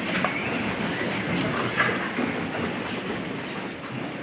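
Many people sitting down at once: chairs scraping and creaking, clothing rustling and scattered small knocks, running on as a steady shuffling noise.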